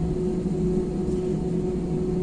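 Jet airliner's engines and cabin noise heard from inside the cabin while the aircraft taxis on the ground: a steady low rumble with a constant whining tone held above it.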